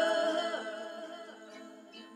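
A woman's voice humming a held note in a slow chant, fading away over the two seconds with a few small downward slides in pitch.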